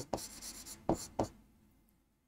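Chalk writing on a blackboard: faint scratching strokes, with two sharper taps about a second in, then it stops.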